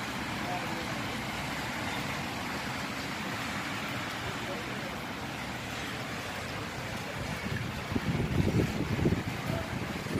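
Steady hiss of a wet city street with road traffic. About eight seconds in, low buffeting hits the microphone for a second or two.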